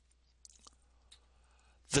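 A few faint, short clicks over a low steady hum in a pause between spoken sentences; speech starts again at the very end.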